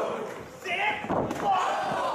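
A wrestler's body slamming onto the wrestling ring mat with a heavy thud about a second in, amid voices shouting around the ring.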